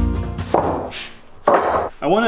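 Acoustic guitar music trailing off, then two short knocks of wooden boards being handled and set down, about a second apart.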